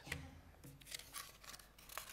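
Quiet room tone with a few faint, small clicks and rustles close to the lectern microphone.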